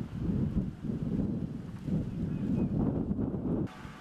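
Wind blowing on the microphone: a low, irregular noise that cuts off suddenly near the end.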